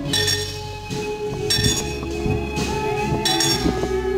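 Small metal bells ringing in about four separate shakes, roughly a second apart, over music with long held tones underneath.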